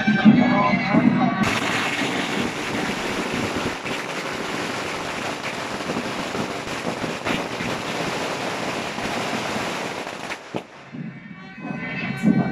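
A long string of firecrackers going off in one continuous, rapid crackling barrage for about nine seconds, starting a second or so in and stopping shortly before the end. Procession music and crowd noise are heard just before it starts.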